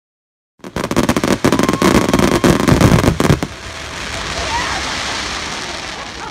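Fireworks crackling: a dense run of loud sharp cracks and pops starting about half a second in and lasting about three seconds, then a steady crackling hiss that slowly fades.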